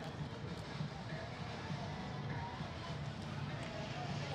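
Steady outdoor urban background noise, a low rumble with faint distant voices.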